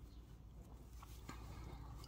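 Faint handling of cotton fabric: soft rustles and a few light taps as the seams of a lined, turned-out fabric piece are rolled between the fingers and smoothed flat by hand, over a low steady hum.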